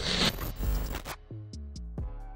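Logo-reveal sound effect: glitchy swishing noise for about the first second, then a low musical tone that rings on.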